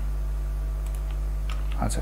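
A few faint computer keyboard keystrokes over a steady low electrical hum.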